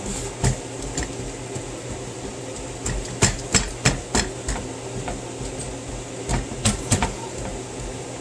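Floured hands patting and pressing biscuit dough flat on a wooden cutting board, with irregular sharp knocks and taps, most in the second half.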